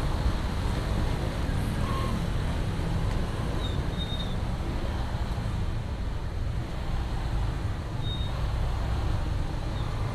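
Steady low rumble of traffic in a jam: cars and motorbikes idling and creeping along a wet street.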